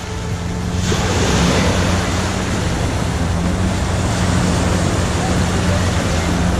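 Small waves washing in over sand in shallow water, a steady rushing wash that swells about a second in, with a low steady hum underneath.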